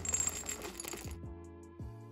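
White chocolate chips poured from a bag into a small ceramic bowl, a dense clatter of small hard pieces that stops after about a second.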